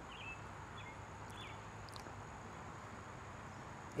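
Faint outdoor garden ambience: a few short, high bird chirps over a steady low hiss and a thin, steady high-pitched drone.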